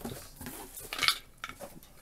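Light clinks and knocks of a broken lamp being lifted and handled in a box, with rustling of plastic wrap, and a sharper clink about a second in.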